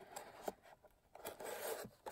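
Ribbon being pulled through punched holes in a cardstock box: faint rubbing and rustling of ribbon against paper, with a light tick about half a second in and a longer rub in the second half.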